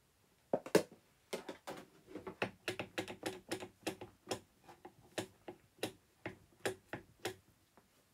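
Fingers typing out a quick, irregular run of sharp clicks, starting about half a second in and stopping shortly before the end.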